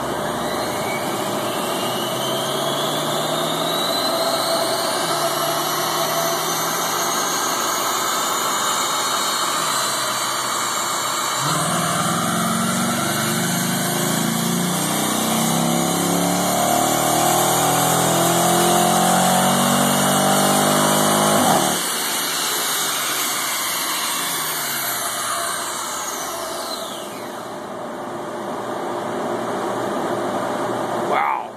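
Dodge Challenger SRT8's Hemi V8 making a wide-open-throttle pull on a chassis dynamometer: the engine speed rises for the first ten seconds or so, then the note gets much louder and climbs steadily for about ten seconds before cutting off suddenly as the throttle closes. After that, the engine and the spinning rollers wind down, their pitch falling.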